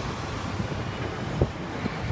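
Low, steady rumble of passing road traffic, with one brief sharp knock about a second and a half in.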